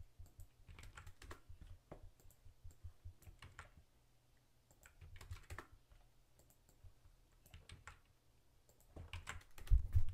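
Computer keyboard typing, fairly faint, in short bursts of keystrokes broken by brief pauses, with a louder low thump near the end.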